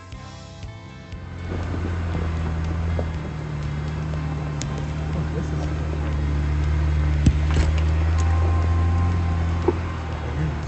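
Background music fading out in the first second, then an off-road vehicle's engine running steadily at low speed as it crawls up a rocky dirt trail, heard from on board. A few sharp knocks come about seven seconds in.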